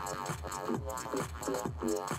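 Electronic music: a looped sampled bass played backwards in the Kontakt sampler, over a drum beat. The bass pumps in level from side-chain compression keyed to the drums.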